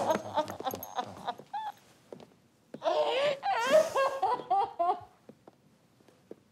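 Knocks and rustling in the first second and a half, then, about three seconds in, a man's loud, broken, wavering cries that bend up and down in pitch for about two seconds before dying away.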